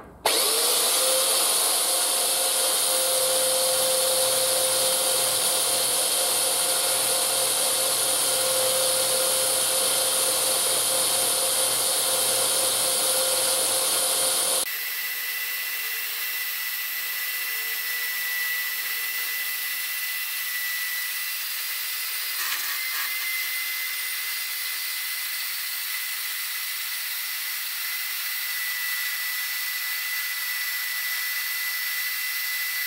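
Parkside PMB 1100 A1 metal-cutting bandsaw, with its 1100 W motor, starting up with a quick rising whine and then running steadily as its blade cuts down through a metal tube. About halfway through, the sound abruptly turns quieter and thinner, leaving a steady high whine.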